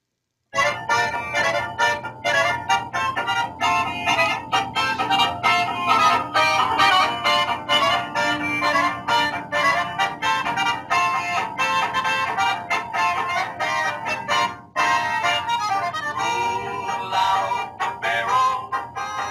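Recorded polka dance music playing with a steady, quick beat, starting about half a second in.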